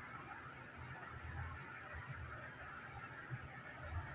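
Faint, steady background noise: room tone with a low hum and a soft hiss, and no distinct sound event.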